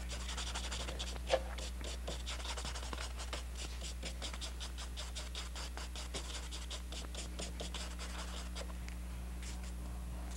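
Paintbrush scrubbing oil paint onto a canvas: a quick, dense run of short scratchy strokes that thins out near the end, over a steady low electrical hum.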